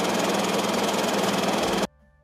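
An engine idling close by, a loud steady hum with a constant low drone. It cuts off suddenly near the end.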